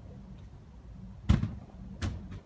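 A thrown plastic water bottle lands with a single sharp thud about a second and a half in.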